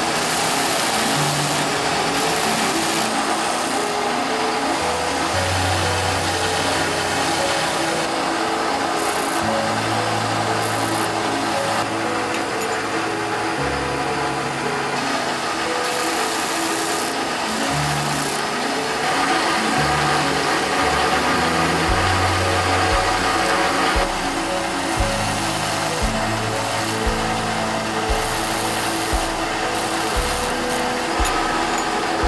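Steel chisel blade ground on a motor-driven grinding wheel, a steady grinding hiss. Background music with a bass line runs under it and takes on a steady beat of about one stroke a second about two-thirds of the way through.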